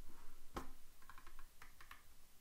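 Clicks from a computer keyboard and mouse: one sharper click about half a second in, then a quick run of light clicks.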